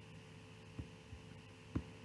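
Faint steady electrical hum from the recording setup, with two soft low thumps, one a little before the middle and a slightly stronger one near the end.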